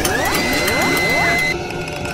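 Logo-animation sound effects: mechanical clicking and ratcheting with several quick rising sweeps, and a high tone that glides up, holds, then cuts off about one and a half seconds in.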